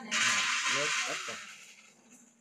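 Shredded bần-flower and beef salad being tossed with chopsticks in a steel mixing bowl: a loud rustling hiss that fades away after about a second and a half.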